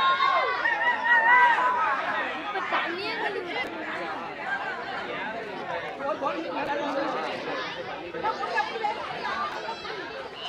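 Crowd of men shouting and chattering, many voices overlapping. The voices are loudest in the first two seconds, then settle into a steady babble.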